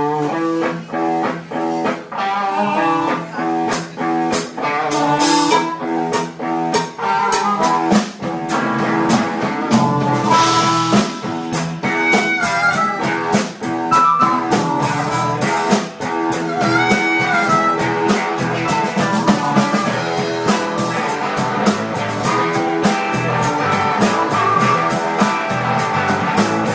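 Blues-rock band recording playing without vocals: guitar over drum kit and bass with a steady beat, with blues harp (harmonica), and a few bending notes.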